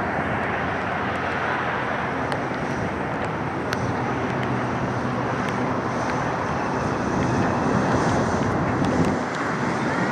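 Steady outdoor background noise, rising a little near the end, with a few faint ticks.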